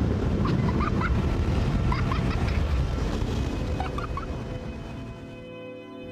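Automatic car wash heard from inside the car: a loud, dense rumble of water spray and brushes over the body, dying away near the end, with a child's short high squeals of excitement.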